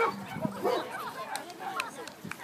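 A dog barking, loudest right at the start, with a few shorter barks after, over people talking.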